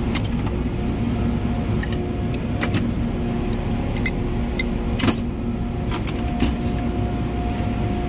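Hand tools clinking and rattling as they are handled in a metal tool chest drawer, over a steady hum of workplace machinery or ventilation, with one sharper knock about five seconds in.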